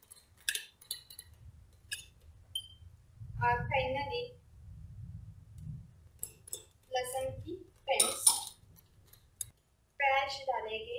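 A metal spoon clinking against a glass mixing bowl while stirring a thick sauce marinade, a few sharp clinks in the first two seconds.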